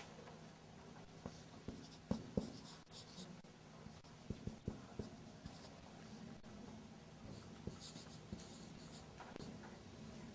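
Marker pen writing on a whiteboard: faint squeaks of the felt tip with small taps as strokes begin and end, in short spells with pauses between.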